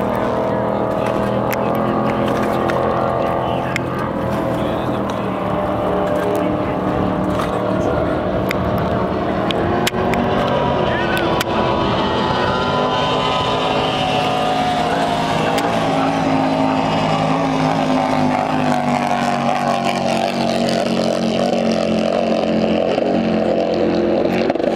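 Motorboat engine running steadily, its pitch drifting slightly up and down.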